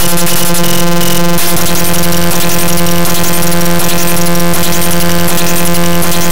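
Bytebeat one-liner music generated live in ChucK, several formula-driven digital waveforms layered at once. It is a loud, harsh, dense electronic sound of steady held tones under rapid glitchy chatter, and its texture changes about a second and a half in.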